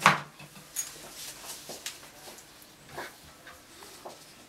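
A sharp knock right at the start, followed by scattered faint clicks and taps.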